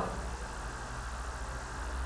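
Steady low hum with a faint even hiss, the background noise of the recording between spoken sentences.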